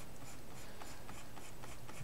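Faint, steady scratching of a pen stylus drawn across a drawing tablet as a line is sketched.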